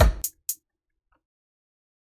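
Brief electronic drum hits from the iZotope BreakTweaker drum machine: a low hit at the start, then two short high ticks about a quarter second apart. The sound cuts off suddenly about half a second in.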